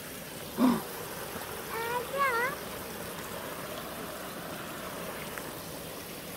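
A small waterfall on a shallow forest stream, water spilling over a log and running steadily.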